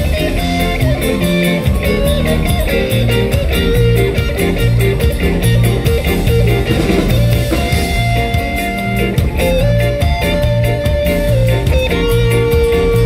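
Live band playing an instrumental passage: an electric guitar lead with held, bending notes over bass and a drum kit's steady beat.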